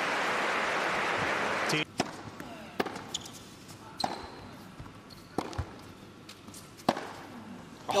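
Crowd applause that cuts off about two seconds in, followed by a tennis rally in a hushed indoor arena: sharp racket strikes and ball bounces on a hard court, one every second or so.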